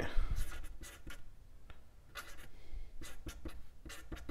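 Milwaukee Inkzall fine point marker's acrylic nib scratching across a pine board, writing out a word in a run of short strokes with brief pauses between them.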